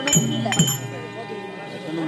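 Folk-theatre accompaniment: two drum strokes whose pitch slides downward, with bright metallic clinks, closing a dance passage in the first second. After that, a murmur of voices.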